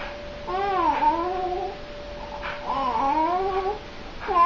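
Baby cooing in two long drawn-out vocal sounds that swoop up and down in pitch, the baby's 'singing'. A faint steady high hum runs underneath and fades out near the end.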